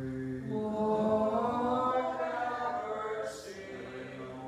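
Byzantine liturgical chant: a man's voice intoning on one low steady note, then from about half a second in a louder, higher sung response that swells and eases back, with a hissed 's' near the end.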